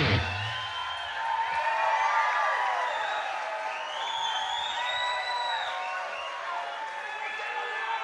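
Concert audience cheering and shouting after a rock song ends. The band's music cuts off right at the start, leaving many overlapping voices rising and falling.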